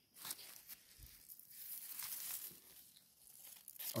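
Faint rustling and scratching of rice leaves and grass brushing against a phone as it is lowered among the plants.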